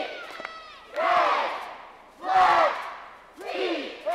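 Cheerleading squad shouting a cheer in unison: three loud shouted phrases about a second apart.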